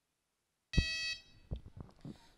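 A single short electronic beep, about half a second long, that starts and cuts off abruptly, followed by a few soft knocks.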